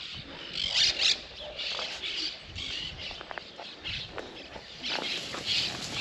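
Outdoor ambience at pens of nutrias (coypus): scattered short rustling crunches about every half second, with a few brief faint squeaks or chirps around the middle.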